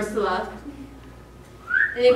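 A person whistling: a short rising whistle near the end, after a brief burst of voice at the start.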